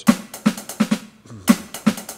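Roland V-Drums electronic drum kit played with sticks: about five single strokes on hi-hat and snare in a sparse hand pattern, with a short pause in the middle.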